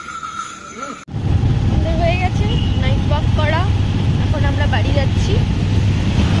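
Music with a steady high tone, cut off suddenly about a second in by a loud low rumble with people's voices talking over it.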